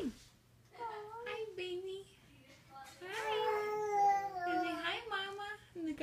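A baby's high-pitched, wordless vocalizing: a short gliding call about a second in, then a longer, louder drawn-out call in the second half that wavers up and down in pitch.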